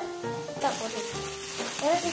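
Pork belly slices and shrimp sizzling on a round samgyupsal grill pan. The sizzle comes in suddenly about half a second in, under background music.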